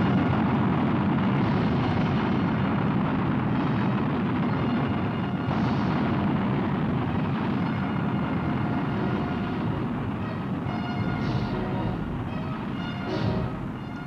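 Roar of a Pershing missile's solid-fuel rocket motor during a test launch, slowly fading, with a film music score under it.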